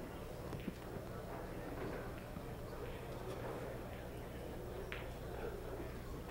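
Quiet room tone of a tournament hall: a low steady hum and faint background voices, with a couple of faint short clicks, one near the start and one near the end.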